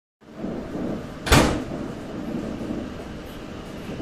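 Steady running rumble heard inside a moving train, with one sharp, loud knock about a second and a half in.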